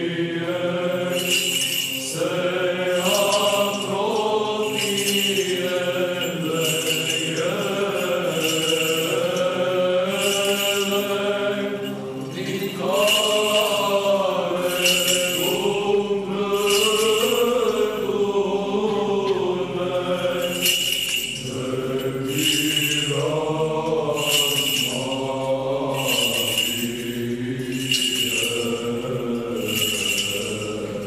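Church choir singing Orthodox liturgical chant in long held notes. Small bells jingle in a steady rhythm about once a second over the singing.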